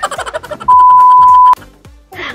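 A single loud, steady electronic beep at one pitch, a bit under a second long, starting about two thirds of a second in: a censor bleep added in editing. It plays over background music with a steady beat.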